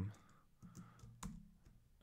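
A few faint, separate key presses on a computer keyboard, the clearest a little past halfway, as notes are typed in with keyboard shortcuts.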